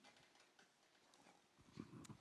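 Near silence: faint room tone, with a few soft clicks near the end.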